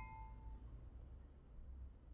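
Ringing of a stemmed beer glass after a clink for cheers, two clear tones dying away within the first half second, then near silence.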